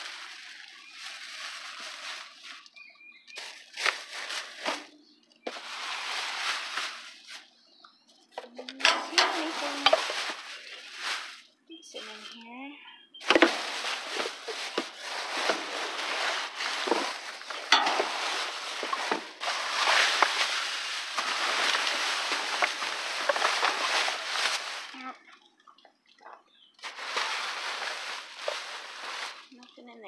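Plastic bags crinkling and rustling as they are handled and rummaged through, in irregular bursts with many small crackles. The longest stretch of handling lasts about twelve seconds in the middle.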